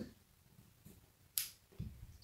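Mostly quiet, with a single short, sharp snip of dressmaking scissors closing on silk satin fabric about one and a half seconds in, followed by a soft low thump.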